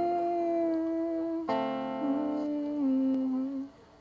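A woman singing a wordless, humming-like line in long held notes over an acoustic guitar, with a fresh guitar chord struck about one and a half seconds in. The sound dies away shortly before the end.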